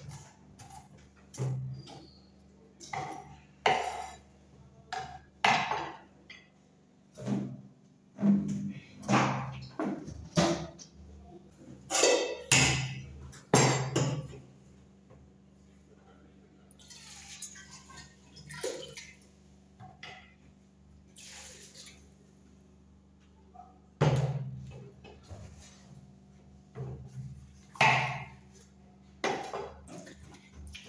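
Kitchen knife chopping red onion on a wooden cutting board: irregular knocks about once a second, pausing for a quieter stretch in the middle before starting again.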